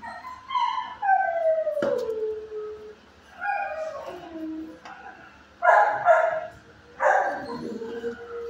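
A dog howling: two long calls that slide down in pitch, then two shorter, rougher calls near the end. A single sharp click sounds about two seconds in.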